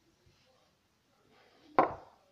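Mostly quiet, then near the end a single sharp knock as a heavy glass shot glass is set down on the table.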